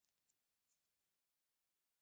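A steady, very high-pitched electronic tone that cuts off suddenly about a second in.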